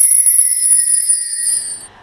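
Shimmering, bell-like chime of a programme title sting: high tones sliding slowly downward, fading out near the end.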